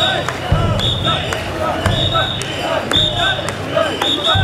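Mikoshi bearers chanting in rhythm as they carry the portable shrine. A short high whistle blast and a low thump come on the beat, about once a second.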